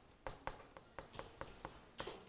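Chalk writing on a chalkboard: a faint, quick, irregular run of taps as the chalk strikes the board, with short scratchy strokes between them.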